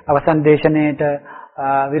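A man's voice reciting in an intoned, chant-like way with long held syllables, breaking off briefly about a second and a half in.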